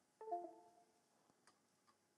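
A short two-note electronic chime about a quarter second in, the second note lower, fading within half a second: a Windows device-disconnect sound as the camera drops its USB connection on being reset. Otherwise near silence.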